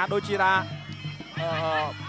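Traditional Kun Khmer ring music: a wavering, reedy melody in two phrases over a steady drum beat, with a voice mixed in.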